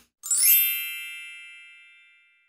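Bell-like chime sound effect on an animated subscribe end screen: a quick upward sweep of bright ringing tones about a quarter second in, which then ring on and fade away over about two seconds.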